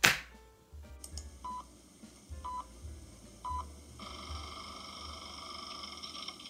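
A sharp knock at the very start, then three short electronic beeps one second apart over a low rumble, followed about four seconds in by a steady high electronic tone of several pitches.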